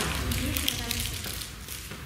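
A sharp click, then a few light taps and handling noises of small objects on a wooden table, over a low steady room hum.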